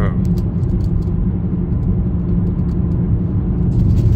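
Car cabin noise while driving at a steady speed: an even low rumble of engine and tyres on the road, with a faint steady hum.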